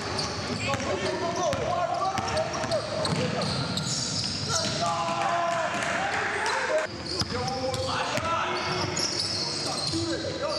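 A basketball dribbled on a hardwood gym floor during play, with players' voices calling out over it.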